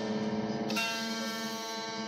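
Electric guitar chords ringing out, with one new chord struck just under a second in and left to sustain.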